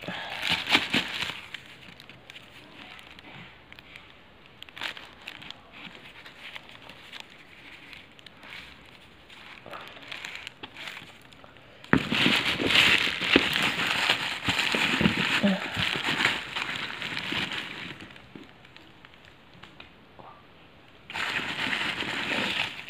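Plastic bags crinkling and rustling as hands rummage through them, with quieter scattered rustles and clicks for the first half and a loud, dense stretch of crinkling about halfway through.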